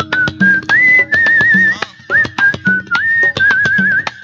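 Live band instrumental intro: a high, whistle-like lead melody with wavering held notes and upward slides, over hand drums and a steady low beat.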